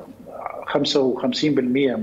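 A man speaking Arabic, giving a figure of 55 percent.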